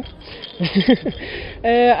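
Speech only: a brief, quieter spoken utterance, then a man starts talking near the end.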